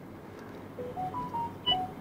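A quick run of short electronic beeps at several different pitches, about a second in, over a faint steady hiss.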